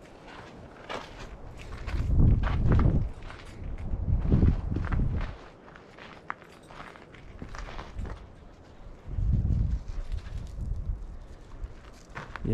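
Footsteps crunching on gravel and dirt ground, with scattered short clicks. Three louder low, muffled rumbles come about two, four and nine seconds in.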